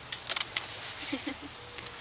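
Hand pruners cutting woody hybrid tea rose canes: a few short, sharp snips, a quick cluster of them about a third of a second in and another pair near the end.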